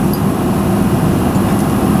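A steady low rumble of background noise in the room, with no clear event.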